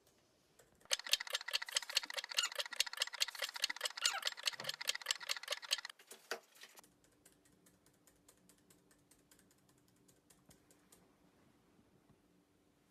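Rapid typing on a laptop keyboard, a dense run of key clicks for about five seconds. After a short break come fainter, more scattered key taps over a faint steady hum.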